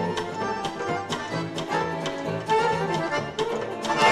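Live trio of button accordion, archtop electric guitar and drum kit playing an up-tempo tune. The accordion carries the melody over a steady beat of about two strokes a second, and the piece ends on a loud accented hit.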